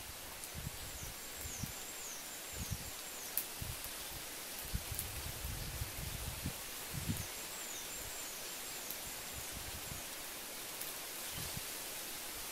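Tree branches and leaves rustling under a climber's weight, with scattered low bumps, and a bird calling a quick series of high, down-slurred notes twice, early and again midway.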